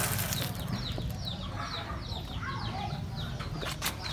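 Birds chirping: many short, high, falling notes, several a second, over a steady low hum, with a few sharp clicks near the end.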